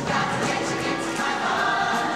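A large mixed show choir singing in chorus.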